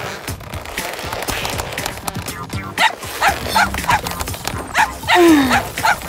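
Cartoon background music with a robot puppy's quick run of short, high yips about three seconds in, and another burst of yips with a falling whine near the end.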